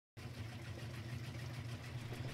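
A steady low mechanical hum with a faint hiss above it, starting abruptly just after the clip begins.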